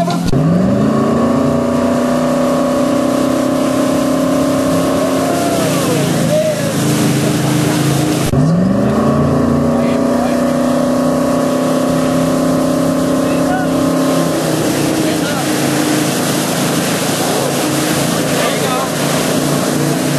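Motorboat engine revving up, its pitch rising and then holding steady, easing off about six seconds in, then revving up again about eight seconds in and holding until about fourteen seconds in, over the hiss of the wake. The boat is accelerating to pull a wakesurfer up out of the water on the tow rope.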